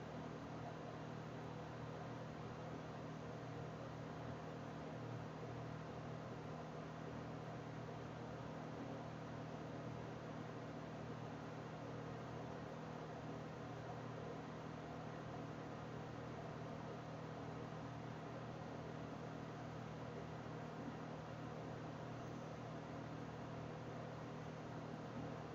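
Steady low hiss with a faint hum: the background noise of a desk microphone recording a quiet room, with no distinct sound in it.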